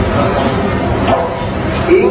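A male Quran reciter's voice over a PA system in a pause between phrases, with heavy recording hiss and faint broken vocal sounds. Near the end a new chanted phrase begins, rising in pitch and then held.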